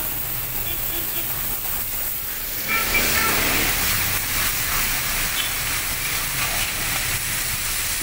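Pressure washer spraying water from a hand-held wand: a steady hiss, louder from about three seconds in.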